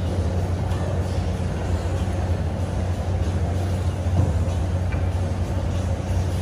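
A steady low hum of background noise, with a few faint clicks of a fork against a plate.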